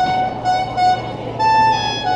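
Violin playing a slow melody of held notes, stepping between a few pitches.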